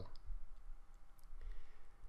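A few faint, sharp clicks over a low, steady room hum.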